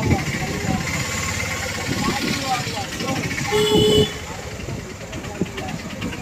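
Crowd chatter and passing traffic on a busy street, with a short horn toot about three and a half seconds in.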